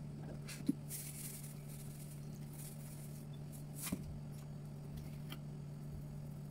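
Salt sprinkled from a canister onto raw fish pieces: a faint hiss about a second in and a couple of light taps, over a steady low hum.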